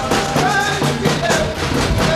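Live boi de mamão folk music: men's voices singing over large drums beaten in a steady rhythm.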